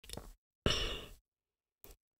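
A man's breath close to the microphone: a short faint breath at the start, then a louder sigh-like breath about two-thirds of a second in that fades out, with dead silence between.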